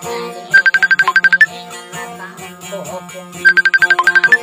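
Acoustic guitar music, with two loud bursts about three seconds apart of one high note repeated rapidly, about ten times a second, each burst ending on a slightly higher note.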